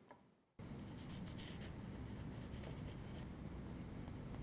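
A knife sawing into a crusty bread roll, making faint scratchy strokes over a steady background hiss. They begin about half a second in, after a moment of silence.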